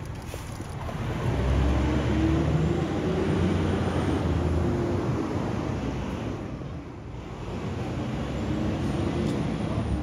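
Street traffic: a motor vehicle's engine hum swells about a second in and fades around seven seconds, then a second vehicle swells near the end.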